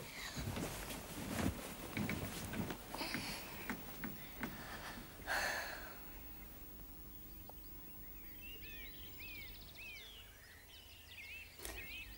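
Scattered knocks and rustling for the first half, then birds chirping with short repeated calls in the last few seconds.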